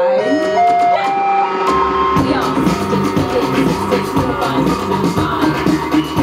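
Live electronic music: a synthesizer plays a run of single notes stepping steadily upward, then about two seconds in a deep bass and a steady beat come in.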